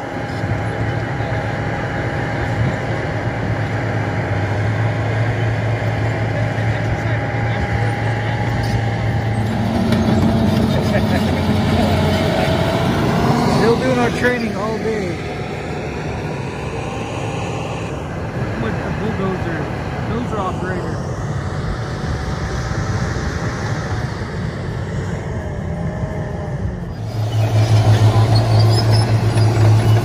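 Diesel engines of crawler bulldozers running as the machines work the dirt: a steady engine drone with a thin steady whine over it. About three seconds before the end a dozer comes close, and its engine gets much louder.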